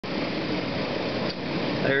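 Steady fan-like hum and hiss of running hatchery machinery. A man's voice starts near the end.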